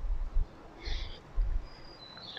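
A small bird calling: a pair of short chirps about a second in and a thin, high whistled note near the end, over faint low rumbling.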